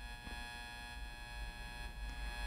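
Faint, steady electrical hum and buzz made of many even overtones, with no speech over it.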